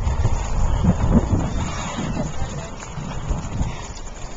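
Wind rumbling and buffeting over the microphone of a camera carried on a moving bicycle, with the ride's road rumble mixed in, easing off a little toward the end.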